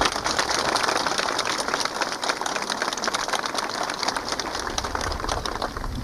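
Crowd applauding with steady, dense clapping.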